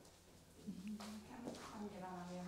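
Near silence for about half a second, then a faint, low voice speaking quietly.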